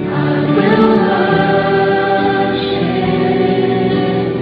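Background music with a choir singing long held notes, entering just after the start over the guitar-led music.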